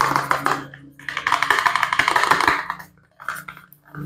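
Cardboard soap box crackling and rustling as nitrile-gloved fingers grip and work at it: two long runs of dense crackles, then a shorter, sparser one near the end, over a faint low hum.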